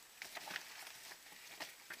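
Plastic packaging crinkling and rustling in irregular bursts as hands rummage in a plastic mailer bag and pull out a small plastic bag.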